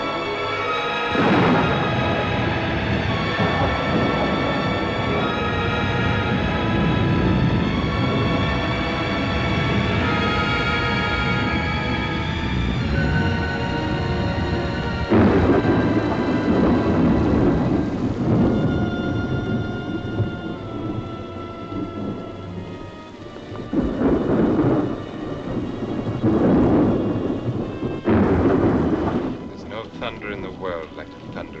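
Orchestral film score playing over a heavy rainstorm with rolling thunder. Loud thunder rumbles swell about halfway through and three more times near the end.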